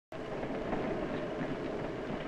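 Steady running noise of a moving train heard inside its baggage car, a 1930s film soundtrack effect.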